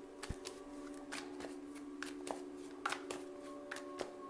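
A deck of tarot cards being shuffled by hand: irregular soft clicks of cards slapping together, over a faint steady hum.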